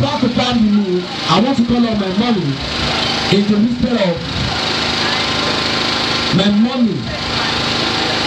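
A man's voice over a microphone in four short phrases, over a steady background hum.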